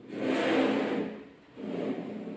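A slab of small magnetic balls sliding and scraping across a tabletop: one long scrape of about a second, then a shorter one near the end.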